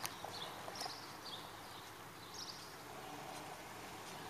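Faint outdoor background noise with a few brief, high chirps scattered through it.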